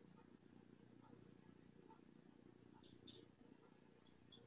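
Near silence: faint room tone with a low hum, and one brief faint click about three seconds in.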